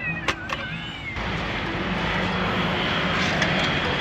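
A couple of sharp clicks, then about a second in a steady vehicle engine roar with a low hum sets in abruptly and keeps on.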